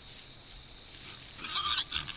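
A single short, harsh animal call about a second and a half in, lasting about half a second, over a steady high-pitched hum.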